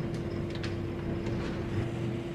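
A steady background hum with a constant mid-low tone over a hiss, with a few faint ticks.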